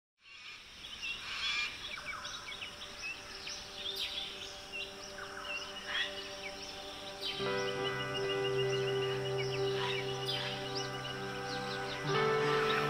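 Forest birds chirping and calling, many short sweeping notes, over a soft held music drone that swells into a fuller sustained chord about seven seconds in.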